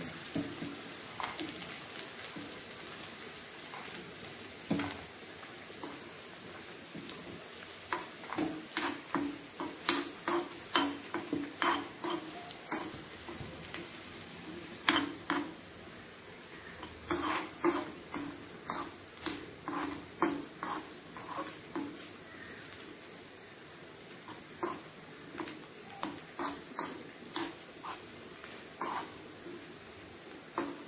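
Dried red chillies and sliced onion frying in oil in a small non-stick kadai: a steady sizzle. A steel spoon stirs and knocks against the pan, the knocks coming in quick runs from about eight seconds in.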